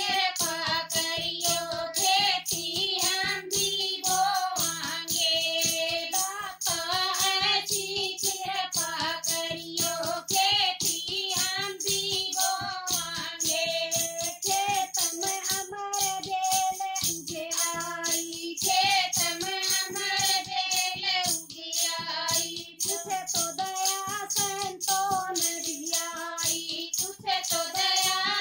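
Women's voices singing a Haryanvi bhajan together, with a steady beat on a hand-struck drum and small hand-held clapping percussion.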